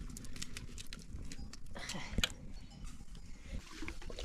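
Dry pieces being crushed by hand and dropped into a pot of dry mixture: a scatter of small crisp crackles and clicks, with one sharper snap about halfway through.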